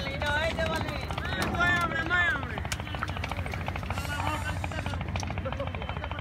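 A large flock of domestic pigeons flying close overhead, their wings fluttering and clapping in a fast, uneven stream of small clicks. Men's voices call out loudly, rising and falling, over the first two and a half seconds.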